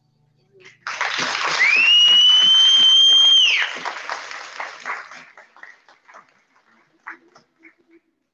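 Small audience clapping and cheering, with a loud whistle that rises in pitch and is held for about two seconds. The applause dies away to scattered claps over the next few seconds.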